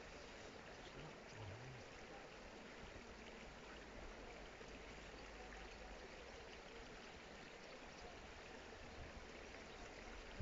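Near silence: a faint, steady rushing hiss with no distinct events.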